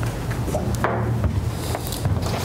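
Writing on a lecture board: a few short taps and scrapes, the strongest a little under a second in, over a steady low room hum.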